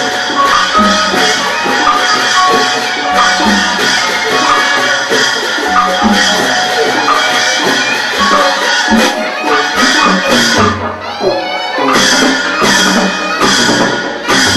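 Traditional Burmese nat-festival music played by an ensemble, with a steady percussion beat. About eleven seconds in the music briefly thins out, then the strokes come back strongly.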